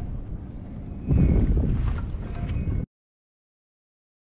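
Wind buffeting a camera microphone on open water, a low rumble that gusts louder about a second in, then cuts off abruptly to dead silence.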